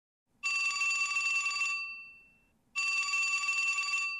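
Telephone bell ringing twice, each ring about a second and a quarter long and trailing off, with about a second of silence between them.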